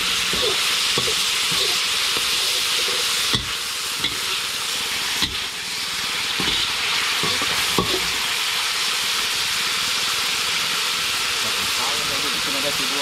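Chicken pieces sizzling in a hot wok, with a metal ladle scraping and clacking against the wok as they are stir-fried. The clacks stop about two-thirds of the way in, while the steady sizzle goes on.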